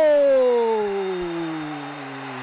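A man's long drawn-out goal cry, "gooool", held as one continuous note whose pitch slides slowly downward while it fades from loud to moderate.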